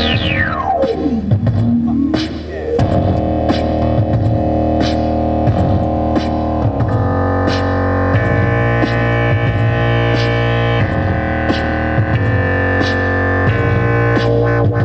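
Live electronic music played on a keyboard synthesizer: a falling pitch sweep in the first second or two, then held synth chords over a steady bass line and a regular beat.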